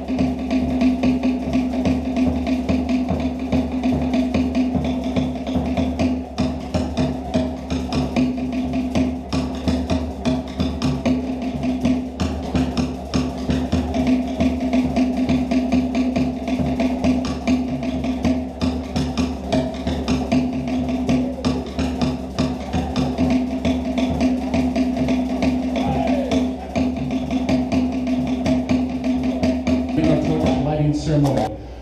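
Polynesian dance drumming: rapid, even wooden drum strikes over a steady low held tone.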